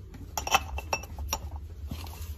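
Pressed-glass ArdaCam plates clinking against one another as they are handled in their cardboard box: several short clinks with a brief high ring, the loudest about half a second in.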